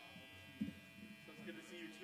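Steady electrical buzz and hum from guitar and bass amplifiers left on between songs, with a single low thump a little over half a second in.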